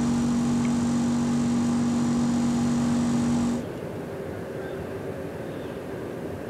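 Outdoor air-conditioning unit's fan running: a loud, steady hum with a low tone and hiss. About three and a half seconds in it drops away to a quieter, steady outdoor background hum.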